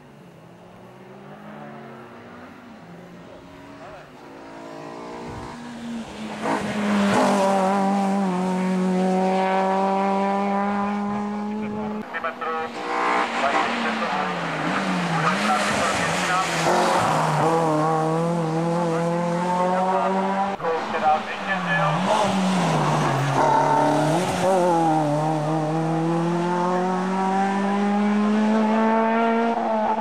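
Competition car engines driven hard at full throttle. One approaches from faint to loud over the first few seconds. The engine note then rises and falls with brief breaks for lifts off the throttle and gear changes, about a third of the way in and twice more in the second half.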